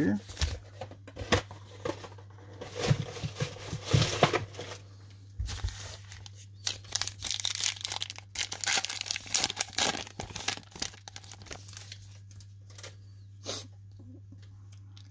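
Crimped wrapper of a baseball card pack being torn open and crinkled by hand: an irregular run of rips and crackles.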